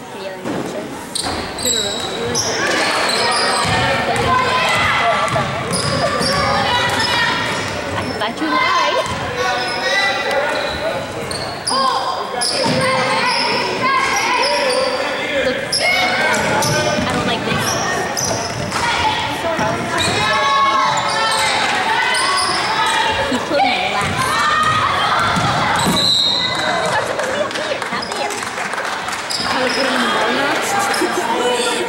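Basketball game in a gymnasium: a basketball bouncing on the hardwood court amid continual shouts and chatter from players and spectators, echoing in the large hall.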